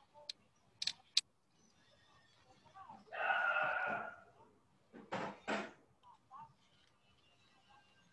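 Mixed small sounds picked up over a video call: a few sharp clicks in the first second or so, a brief voice sound without clear words about three seconds in (the loudest thing), then two short noisy bursts just after five seconds.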